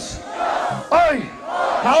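A man's shouted prayer: two loud, drawn-out shouts, one about a second in and one at the end, over a large crowd praying aloud.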